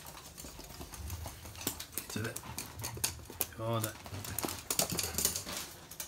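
Toy poodles' claws clicking on a hard wooden floor as they scamper about, many quick sharp clicks. Two brief vocal sounds come near the middle.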